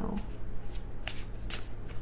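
A deck of tarot cards being shuffled by hand: a run of irregular, crisp card snaps and rustles.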